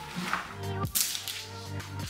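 Background music with a few brief swishes and crinkles of clear plastic windshield protection film being unrolled and laid over the wet glass.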